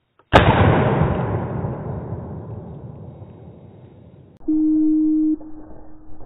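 A single shotgun shot fired from an over-and-under at a flushed woodcock, cracking sharply and then rolling away through the woods over about four seconds. Near the end a steady low tone sounds for about a second.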